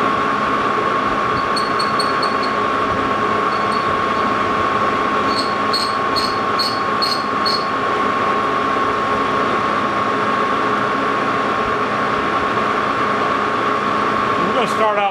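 Lodge & Shipley engine lathe running steadily at low speed with a constant whine. A carbide boring bar ticks lightly against the rough-cast iron pulley hub in two brief spells of about two ticks a second, roughly once per turn: an interrupted cut as the tool first catches the high spots of the rough casting.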